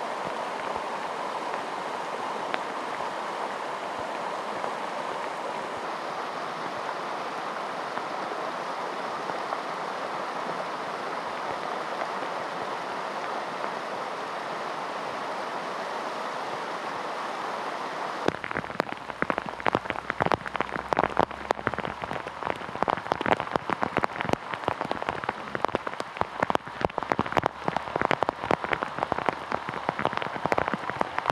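Floodwater flowing steadily over a road and ditch, a smooth even rush. About two-thirds of the way through it changes abruptly to heavy rain, with many sharp drop hits close by.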